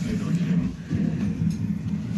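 A low voice talking indistinctly, with soft rustling of a nylon down jacket being handled.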